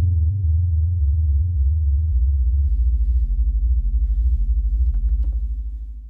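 Moog Subharmonicon analog synthesizer playing a deep bass sequence of stepping notes. From about two seconds in it pulses in a fast, even rhythm, then fades out near the end.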